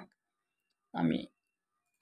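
Faint computer mouse clicks in near silence, broken by one short spoken word about a second in.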